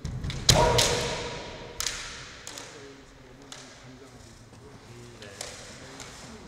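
Kendo exchange: bamboo shinai clacking and a loud strike about half a second in, with a drawn-out shouted kiai that fades over the next second or so. A few lighter shinai knocks follow as the two fighters close in.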